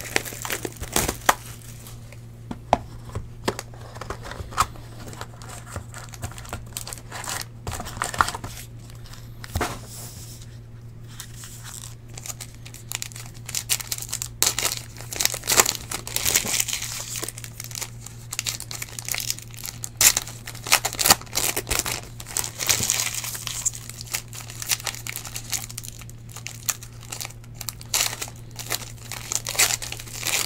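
Foil packs of 2017 Unparalleled football cards being crinkled and torn open by hand, with cards handled, making irregular crackling rustles that are busiest in the middle of the stretch. A steady low hum runs underneath.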